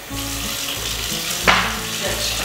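Kitchen faucet running, water pouring into a large bowl in the sink with a steady hiss, and a brief louder splash-like burst about one and a half seconds in.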